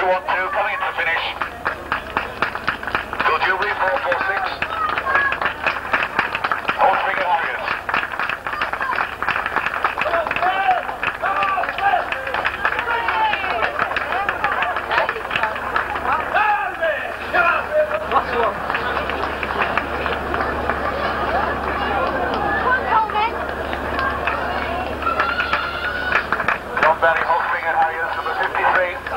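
Indistinct chatter of spectators' voices in the open air, with no clear words, over a steady low hum.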